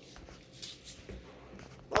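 Faint rustling and light knocks of hands working a sticky cereal-and-marshmallow mixture and handling plastic containers at a table, with a couple of soft thumps; a voice starts speaking at the very end.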